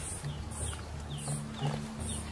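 Wild animal sounds: short high chirps repeating about twice a second over a low rumble.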